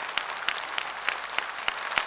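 An audience applauding, many hands clapping at once with no voice over it.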